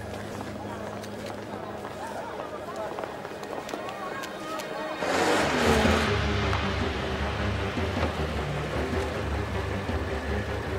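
A car drives up with a rush of engine and road noise about five seconds in, then its engine keeps running with a steady low rumble. Before it there is only quieter background sound.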